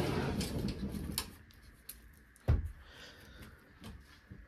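A wooden cabinet-style closet door being handled: rustling at first, then a few light clicks and one louder knock about two and a half seconds in.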